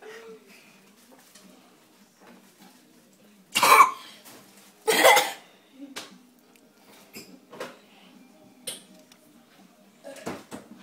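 A boy coughing twice, loud and harsh, about three and a half and five seconds in, from the burn of Tabasco hot sauce, with a few faint short sounds afterwards.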